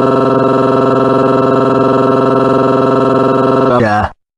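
A synthetic text-to-speech voice holding one long, drawn-out 'whaaat' at a steady pitch, with a short wobble in pitch as it cuts off near the end.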